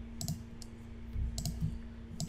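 Computer mouse button clicks: a quick pair about a quarter second in, a faint single click, then another pair around a second and a half in, over a steady low hum.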